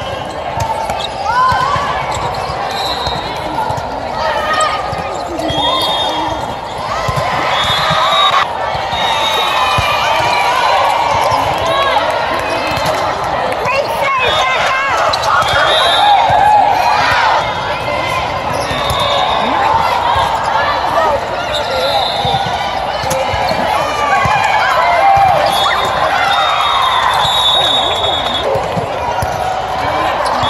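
Volleyball play in a large indoor sports dome: many players and spectators calling out and chattering at once, with volleyballs being struck and bouncing on the courts and short high squeaks scattered throughout.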